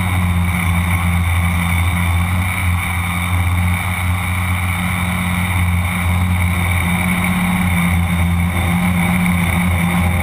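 A tricopter's electric motors and propellers running in flight, picked up by a camera mounted on the craft. It is a steady hum with a higher whine above it, and the pitch dips briefly a few times.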